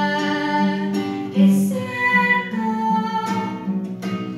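A girl singing a Spanish ballad solo, holding long sustained notes, to an acoustic guitar accompaniment.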